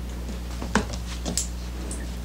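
A steady low electrical hum with a few brief, faint clicks and rustles, one about three-quarters of a second in and another shortly after a second.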